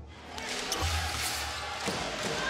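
Short intro music sting with deep bass hits, then a basketball being dribbled on a hardwood arena floor, its bounces coming about every half second over arena noise.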